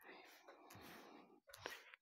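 A person's faint whispering, without voice, in two stretches: a longer breathy one, then a short one with a couple of sharp mouth clicks.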